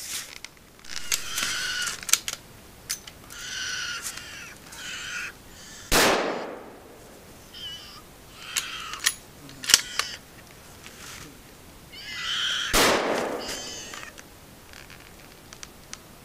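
Bear cubs shrieking from their den in repeated high, wavering cries. Two loud gunshots ring out, about 6 s in and near 13 s, with a few sharp clicks between.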